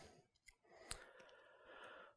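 Near silence: room tone, with two faint short clicks and a faint breath near the end.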